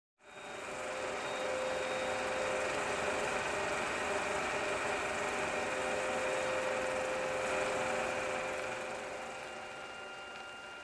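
Old film projector running: a steady mechanical whir with a faint hum, fading in at the start and easing off near the end.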